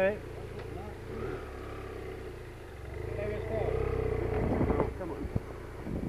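Motorcycle engine running at low revs while the bike is ridden slowly over dirt, getting louder about three seconds in and easing off near the end.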